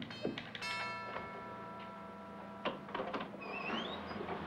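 Doorbell chime: two notes, the second ringing out for about two seconds. A few sharp clicks follow, then a short rising squeak near the end as the apartment door is opened.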